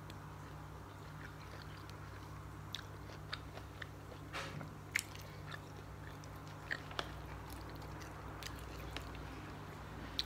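A person chewing a mouthful of salad with cabbage, cashews and seeds: faint crunches and a few short sharp clicks scattered through, over a low steady hum.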